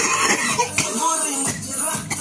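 A man laughing, with music playing in the background.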